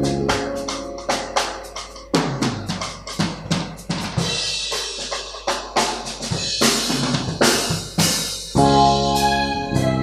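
Drum kit played alone in a fast break: rapid snare and bass-drum hits with cymbal crashes. The held notes of the full band, with keyboard chords and bass, come back in about eight and a half seconds in.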